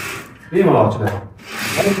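Cord-drawn curtain sliding along its ceiling track: a rubbing, hissing friction sound at the start. A voice speaks briefly over it about half a second in and again near the end.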